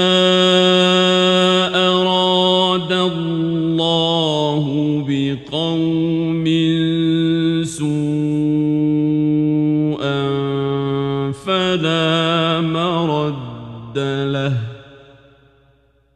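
Male Quran reciter chanting in the melodic mujawwad (tajwid) style: long held, ornamented notes with a few short breaks, fading out near the end.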